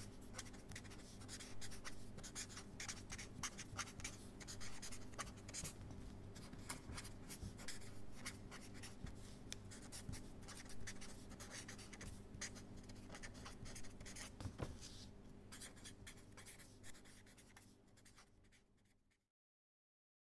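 Faint scratching of a pen writing on paper, a dense irregular run of small strokes over a low steady hum, fading out near the end.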